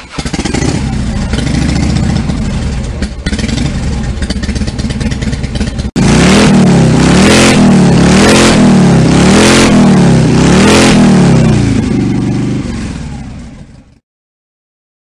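Harley-Davidson motorcycle engine running steadily. After an abrupt cut about six seconds in, it is revved up and down about five times, roughly once a second, then fades out near the end.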